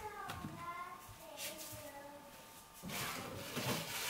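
A child's voice, faint and distant, singing or calling from elsewhere in the house, with soft rustles and light knocks of groceries being put into a fridge about a second and a half in and again near the end.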